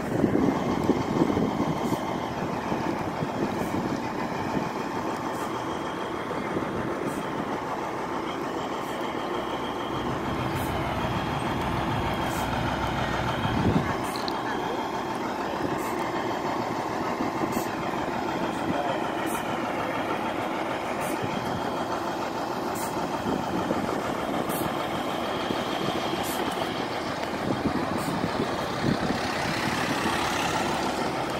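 Motor vehicle engines running steadily, idling and passing on the road, with a low rumble swelling for a few seconds in the middle, under the chatter of people.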